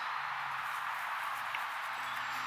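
Steady background hiss, with a faint low hum coming in just after the start.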